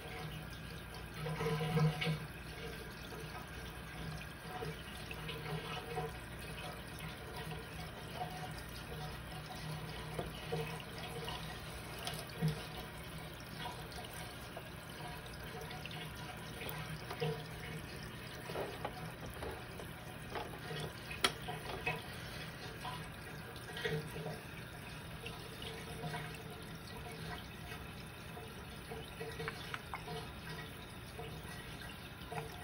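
Reef aquarium water gurgling and bubbling steadily, with many small pops and splashes, over a faint low hum.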